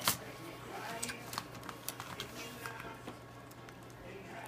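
A few faint, scattered plastic clicks and handling noises as a replacement laptop keyboard is held up and its short ribbon cable is worked into the motherboard connector, over a steady low hum.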